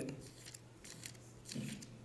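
A quiet room pause after speech, with faint room tone and one brief faint sound about one and a half seconds in.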